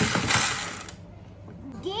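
Plastic crank handle of a toy ice cream maker being turned, its gears giving a rapid ratcheting clatter that fades out about a second in.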